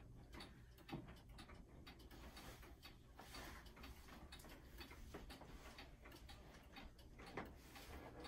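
Weight-driven pendulum clock ticking faintly and evenly, over quiet room tone.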